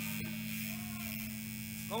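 Steady mains hum from a band's stage amplifiers idling between songs, with the music stopped. A faint voice is heard in the middle, and a shout begins right at the end.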